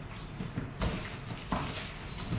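Shoe footsteps on a hard tiled floor while a cardboard box is carried and set down, with two louder knocks a little under a second apart.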